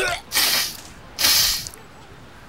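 A man doubled over from overeating, forcing out two harsh breathy heaves about a second apart, each about half a second long.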